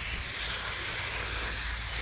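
Garden hose spray nozzle running, a steady hiss of water spraying onto the lawn, over a low steady rumble.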